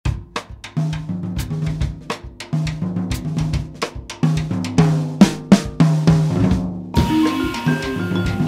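Instrumental jazz intro led by a drum kit: snare and bass drum hits over a low bass line. About seven seconds in, the rest of the band comes in with held higher notes over a steady wash.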